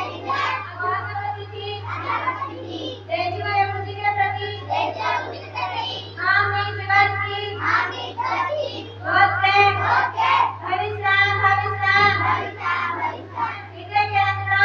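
Young female voices singing a prayer song through a microphone and PA, in long held notes, with a steady low hum underneath.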